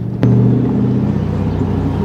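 Camaro SS's LS1 V8 engine running under throttle in an open convertible. It comes up sharply about a quarter-second in, then holds a steady low note, with road and wind noise.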